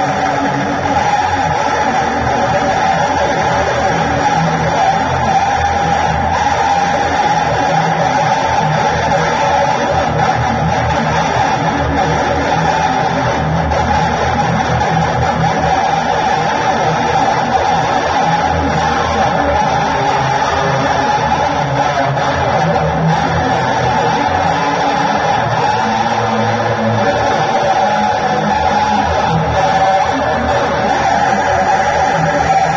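Electric guitar played along with a loud backing track from a loudspeaker, the music running dense and unbroken.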